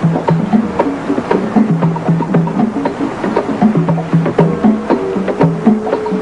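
Percussion music: a quick, steady rhythm of low pitched drum strokes mixed with sharp, wood-block-like clicks.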